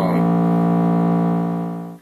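A single steady sawtooth tone from a Buchla 258V oscillator, rich in harmonics and held at one low pitch, returned to its plain, unprocessed form. It fades and cuts off at the end.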